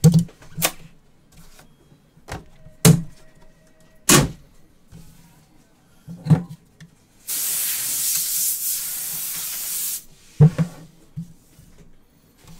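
Sealed cardboard trading-card boxes being handled and set down on a table, giving a series of sharp knocks. About seven seconds in comes a steady hiss lasting nearly three seconds, from packaging being slid or cut.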